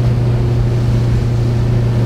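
Jon boat's outboard motor running at a steady cruising speed, an even hum under the rush of water and wind as the boat moves along.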